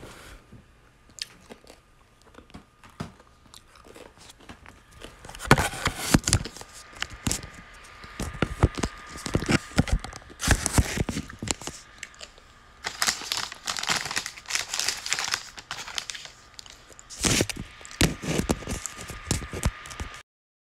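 Several bursts of close rustling, crinkling and clicking handling noise, starting about five seconds in, over a faint steady high whine.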